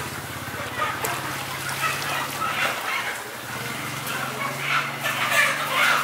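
Water sloshing and splashing as slaughtered chickens are swished by their feet through a pot of scalding water to loosen the feathers for plucking, over a steady low hum. The sloshing gets louder near the end as a bird is lifted out.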